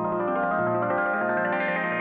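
MIDI-synth music: a steady run of held, pitched notes that shift every fraction of a second.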